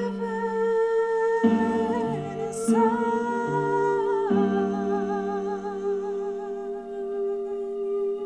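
A woman's voice holding long wordless notes with vibrato over a backing track of sustained chords that change three times.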